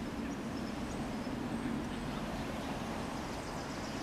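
Steady, low outdoor background rumble, like distant city traffic.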